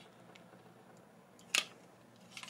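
A single sharp plastic click about one and a half seconds in, as the hard plastic parts of a transforming Transformers action figure are shifted by hand; otherwise only faint handling noise.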